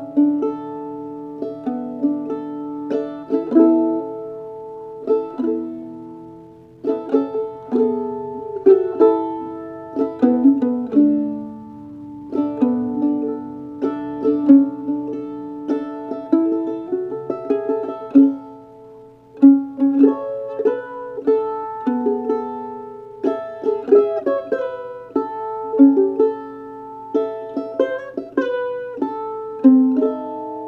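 Solo Northfield Model M mandolin with an Engelmann spruce top and maple back and sides, picked: a melody of single notes and chords that ring and decay, with a short pause about two-thirds of the way through.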